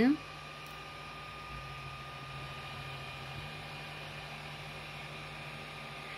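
Creality Ender 6 3D printer running mid-print, its print head picking up speed: a steady whir of its cooling fans over a low motor hum, which drops a little lower in pitch for a couple of seconds near the middle.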